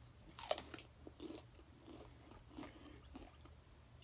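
A person biting into a raw pepper: one sharp crunch about half a second in, then several softer crunching chews.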